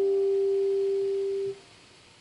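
The last sustained note of an archtop electric guitar ringing on as one steady tone and slowly fading. It stops abruptly about one and a half seconds in, leaving faint hiss.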